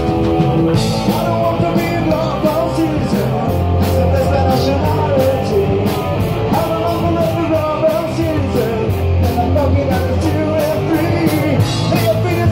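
Punk rock band playing live: electric guitar, bass guitar and drums keeping a steady beat, with a man singing.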